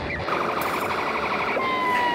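Electronic siren of an RC model emergency vehicle: a fast pulsing yelp that switches about a second and a half in to a slower wail, falling in pitch.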